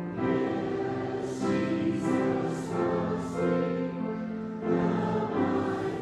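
A congregation and children singing a short Sunday-school song together, in sustained sung notes.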